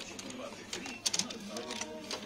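Light plastic clicks and clatter from a hinged plastic folding ruler as its arms are moved and handled, over faint background voices.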